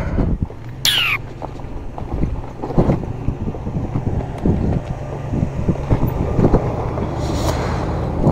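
Zero FX electric motorcycle rolling slowly over a rocky gravel road: its tyres crackle over loose stones, with wind on the microphone and a low steady hum. A brief falling squeal comes about a second in.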